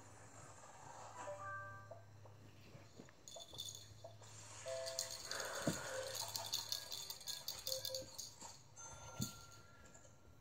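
A rapid dry rattling, like a shaken rattle, starting about three seconds in and going on for some five seconds, with a few short faint tones around it.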